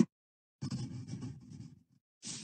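Pencil scribbling on paper, an uneven scratching that starts about half a second in and lasts just over a second.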